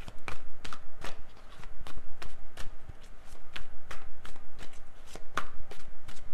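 A tarot deck being shuffled by hand: a steady run of quick card clicks and slaps, about three or four a second.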